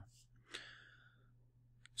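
Near silence with a brief, faint breath from a man about half a second in, and a small mouth click just before he speaks again.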